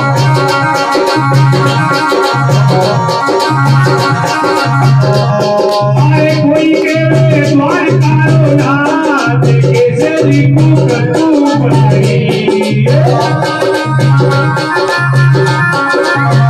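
Bhajan music played live on an electronic keyboard with organ-like sustained tones, over hand-drum percussion. A steady low beat falls about once a second under fast, high percussion strokes, and a gliding melody line comes in over the middle stretch.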